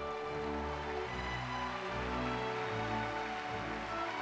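Orchestral music playing slow, long-held chords that change about once a second, over a steady, even rushing noise.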